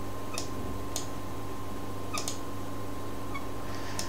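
Steady electrical hum and room hiss, with four faint clicks of a computer mouse.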